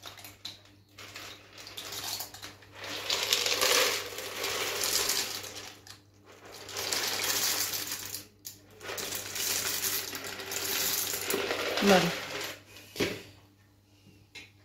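Dry macaroni being poured from a plastic tub into a Thermomix TM6 bowl of tomato and water, in three slow pours with short breaks between them.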